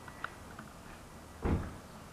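A single dull thump about one and a half seconds in, over scattered faint small ticks.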